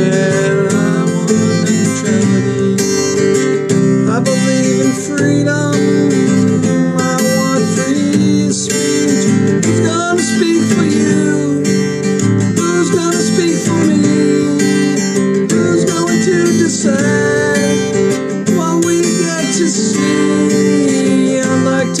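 Acoustic guitar strummed in steady chords, with a man singing over it.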